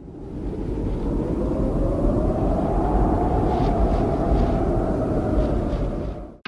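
A rumbling, aircraft-like whoosh sound effect under a logo intro. It fades in from silence, holds steady with a faint rise and fall in pitch, and stops abruptly.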